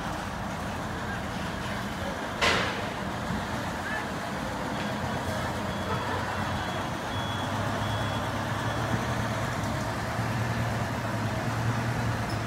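Outdoor street noise with a vehicle engine running, its low hum growing louder in the second half. A single sharp knock about two and a half seconds in, and a faint run of short high beeps, about two a second, in the middle.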